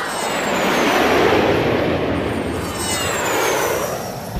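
Jet airliner flyby sound effect: a steady rushing jet noise with high whining tones that slide down in pitch, once at the start and again in the second half.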